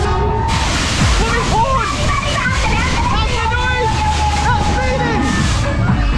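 Rushing wind over the microphone as a moving fairground ride car carries it round. It sets in about half a second in and lasts until near the end, with riders' voices shouting over it.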